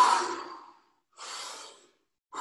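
A person taking deep, full breaths as a warm-up for playing a brass instrument: a loud breath at the start that fades over about a second, then a second, quieter breath about a second later.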